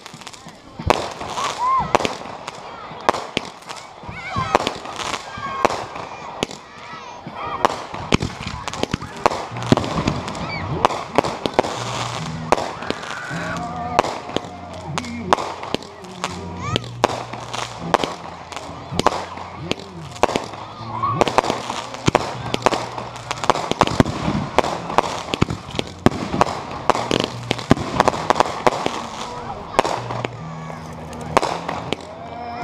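Consumer aerial fireworks launching and bursting in quick succession, a rapid run of sharp bangs and crackles throughout.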